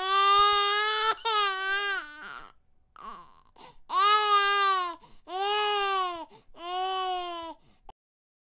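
A baby crying in about five wails, each around a second long, with a short pause near the middle.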